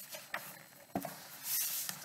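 Pages of a thick hardback Bible rustling as it is opened and leafed through, with a few soft taps and a short swish of paper about a second and a half in.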